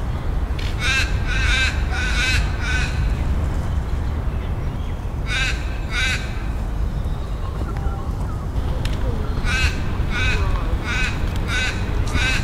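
A bird giving harsh cawing calls in three bunches: four calls, then two, then about six, each call short.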